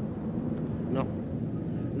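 Steady low rumble of outdoor background noise, with a voice saying a short 'No' about a second in.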